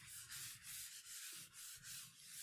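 Paper towel rubbed in quick back-and-forth strokes over a graphite pencil drawing on rag paper, smoothing and blending the marks: a faint, even scraping, about four or five strokes a second.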